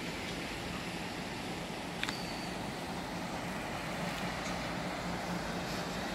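A distant engine hum over steady outdoor noise, with a single sharp click about two seconds in.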